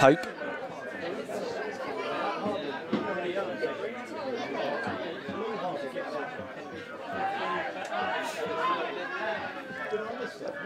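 Chatter of a small crowd of football spectators: many voices talking over one another at a steady, moderate level, with no single voice standing out.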